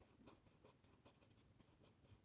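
Faint scratching of a felt-tip marker on paper, colouring in a shape with quick back-and-forth strokes, about four or five a second.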